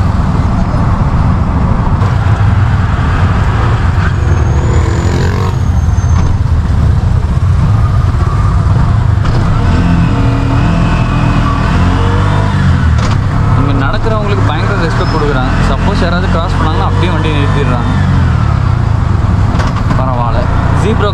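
Auto-rickshaw (tuk-tuk) engine running while under way in traffic, heard from inside the open cab. It is a loud, steady low drone whose pitch rises and falls as the throttle is opened and eased.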